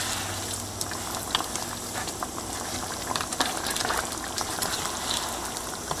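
Oxtail stew sauce bubbling in a pot as it comes to a boil, with scattered small pops.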